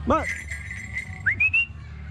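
A person whistling: a steady high whistle lasting about a second, then a short whistle gliding upward. It comes right after a short called "ba" and is a falconer's call whistle to a changeable hawk-eagle.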